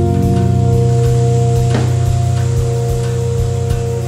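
Acoustic instrumental music: a sustained low chord over bass notes, with a few plucked notes and soft, regular percussion.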